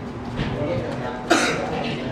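A loud cough a little past halfway, over faint background talk and a steady low hum.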